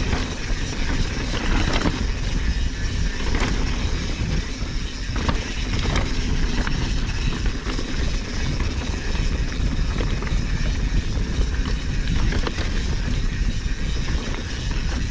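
Wind buffeting the microphone while a mountain bike rolls over dirt and slickrock, with tyre noise on the trail and scattered clicks and knocks from the bike going over rocks.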